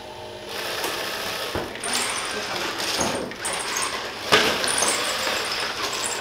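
FIRST Tech Challenge robot's motors and mechanisms whirring as it drives and works. Three sharp knocks come through it, the loudest about four seconds in.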